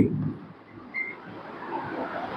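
Chalk writing on a blackboard: faint scratching, with a brief high squeak about a second in.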